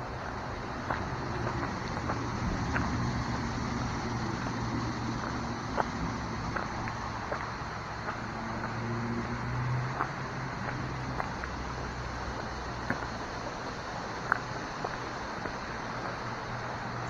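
Steady outdoor background of low rumble and hiss, with scattered light ticks and footsteps on a dirt path.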